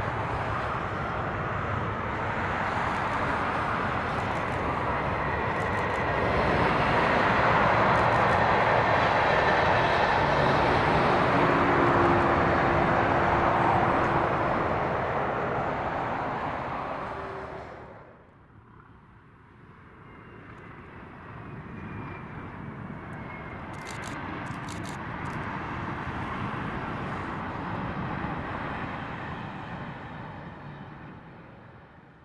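Dual-carriageway road traffic: cars and an articulated lorry passing with steady tyre and engine noise, loudest in the middle. About two-thirds of the way through it drops away suddenly, and a fainter distant rumble slowly builds.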